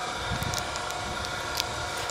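Steady outdoor background noise with a low rumble, and a couple of faint short clicks.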